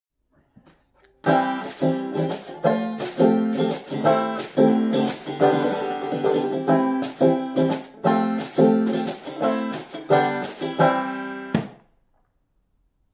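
Five-string banjo strummed in a steady rhythm of chords, each strum ringing bright, starting about a second in and stopping shortly before the end.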